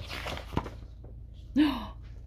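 A paperback picture-book page being turned: a half-second of paper rustle, then a soft tap as the page settles. Near the end comes a short voiced sound from the reader.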